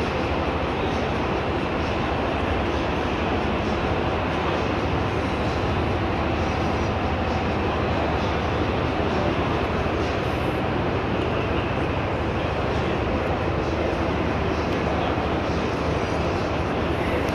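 Steady background din of a busy exhibition hall: indistinct voices over a continuous low rumble, with no distinct events.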